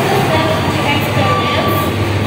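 A woman speaking over loud, steady background noise with a low hum underneath.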